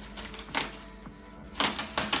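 Scissors snipping and crinkling clear plastic wrapping, with sharp crackles about half a second in and a quick cluster near the end, over quiet background music.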